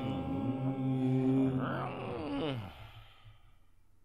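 Layered a cappella voices closing out the song: a low held note with a voice swooping up and down in pitch over it, fading out about three seconds in.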